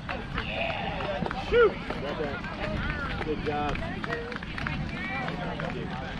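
Scattered calls and chatter from players and spectators on an open ball field, with one brief louder shout about a second and a half in.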